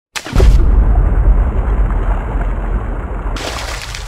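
Intro sound-effect sting: a sudden deep boom that fades into a long low rumble, with a rushing whoosh about three and a half seconds in.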